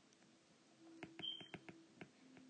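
Faint, light clicks of a stylus tapping on a tablet's glass screen while writing numbers, a few taps close together in the second half, over a quiet low hum.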